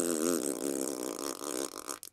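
A person's long, fart-like 'PLURRRPPP' raspberry made with the lips, rattling and trailing off over about two seconds: the comic noise of a frog being sat on.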